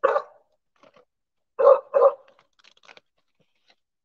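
A dog barking: one bark at the start, then two quick barks a bit under two seconds in, followed by a few fainter sounds.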